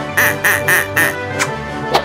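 Upbeat background music with a comic sound effect repeated four times in quick succession in the first second, then a sharp click near the end.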